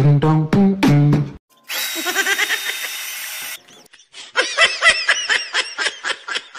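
Beatbox-style music that cuts off about a second and a half in, then a hissy sound effect of about two seconds. From about four seconds in comes a rhythmic, snickering laugh sound effect of short repeated giggles, several a second, fading toward the end.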